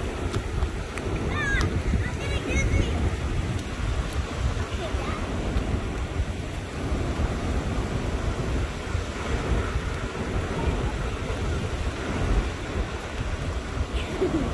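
Small waves lapping and washing up onto a sandy beach, with wind buffeting the microphone.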